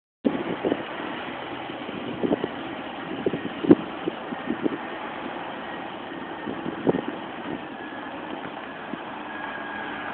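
Articulated truck's diesel engine running steadily at low speed while the semi-trailer moves off slowly. A few short knocks stand out over it.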